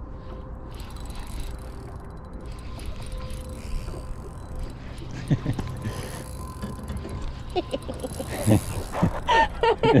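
Spinning reel being cranked on a retrieve, its gears whirring and ticking, over steady low wind and water noise; a short laugh at the very end.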